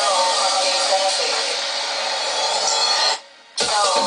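A DJ mix played from Pioneer CDJ decks: a melodic track plays, cuts out suddenly about three seconds in, and after a brief gap a new electronic track comes in with a steady beat.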